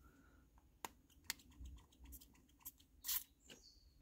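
Fine-mist pump spray bottle of facial mist: faint clicks of the plastic bottle being handled, then one short hiss of spray onto skin about three seconds in.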